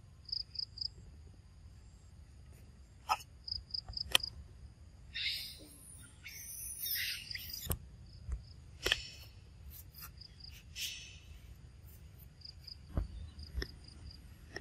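Insects chirping in short high-pitched groups of three or four, repeated several times. Scattered sharp clicks and brief rustling noises come over them, the loudest a click about four seconds in.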